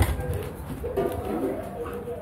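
A bird cooing, over background voices, with a sharp knock at the very start.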